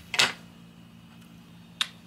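Two short, sharp snapping clicks: a louder one just after the start and a shorter, sharper one near the end.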